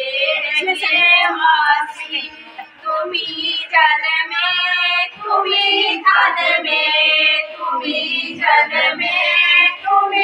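Women's voices singing a Hindu devotional song (bhajan) in a high melody, with a short lull in the singing between about two and three seconds in.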